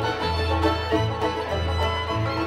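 A live string band plays an instrumental break, with a fiddle carrying the melody over banjo and a low bass line.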